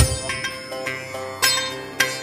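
Background music with plucked, ringing string notes and bell-like chimes in an Indian folk style; a fresh struck note comes in about a second and a half in.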